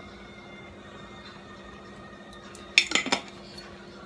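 A quick cluster of sharp clinks and clatter against a cooking pot about three seconds in, as bacon grease is added from a glass jar to a pot of cabbage, over a low steady hum.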